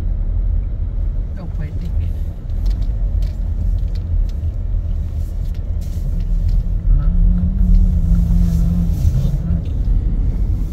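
Car cabin rumble from the engine and tyres while driving slowly along a street, heard from inside the car. A low held tone joins in for about two seconds near the end.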